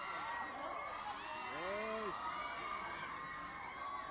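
A crowd of fans cheering and calling out, a steady din of many voices with single voices rising and falling above it, the clearest about one and a half to two seconds in.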